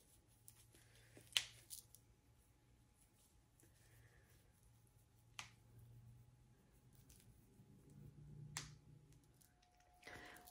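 Near silence broken by three faint sharp clicks a few seconds apart: the snap clips of a hair topper being unclipped from the hair as it is taken off.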